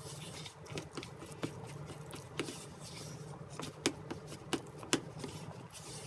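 Silicone spatula stirring and scraping a stiff, crumbly flour batter around a bowl: irregular soft scrapes with a few sharper clicks against the bowl's side, over a steady low hum.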